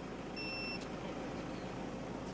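Steady outdoor ambience of a small gathering, with one short, high electronic beep about half a second in.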